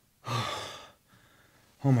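A man's long, breathy sigh, starting about a quarter of a second in and fading out within a second. It is a sigh of satisfaction: right after it he says "Oh my God".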